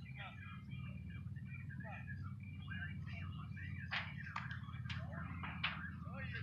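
Birds chirping in the background, many short quick notes over a low steady rumble, with a few sharp clicks in the second half.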